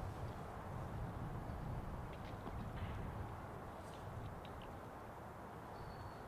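Quiet outdoor background noise: a steady low rumble with a few faint, short ticks.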